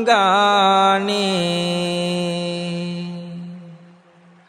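A Buddhist monk chanting a Sinhala kavi bana verse, the voice wavering through a turn of melody and then drawing out one long held note that fades away near the end.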